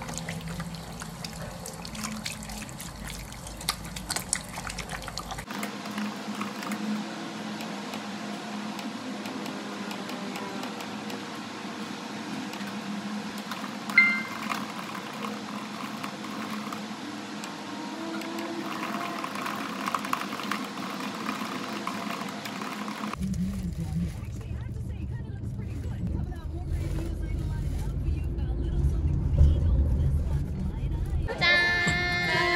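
Water running from a tap over hands being washed for about the first five seconds, then a quieter stretch with soft background music and one short ping about fourteen seconds in, then a car's low interior rumble with voices from about twenty-three seconds.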